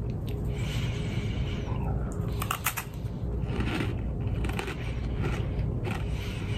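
Chewing a crunchy freeze-dried ice cream sandwich: irregular crackly crunches over a steady low hum.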